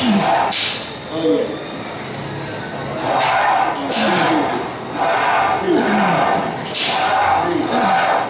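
A man grunting and groaning with strain through heavy barbell reps, in short falling cries about once a second, louder in the second half.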